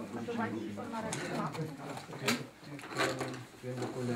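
Men talking quietly in a small room, with a few sharp crackles as a crinkly silver wrapping sheet is handled, the loudest about halfway through.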